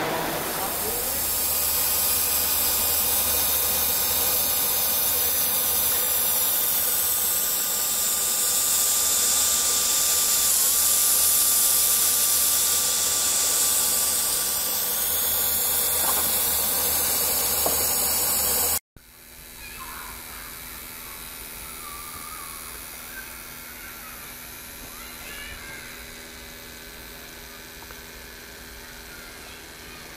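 Steady, loud steam hiss from the live-steam Aster FEF 4-8-4's miniature steam turbine generator and its control valve, with a thin steady tone running through it. About two-thirds through it cuts off abruptly to a much quieter background.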